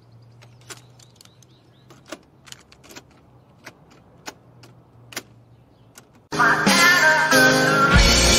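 Scattered plastic clicks from the buttons and controls of a large portable boombox being handled, over a faint hum. About six seconds in, loud guitar music starts suddenly.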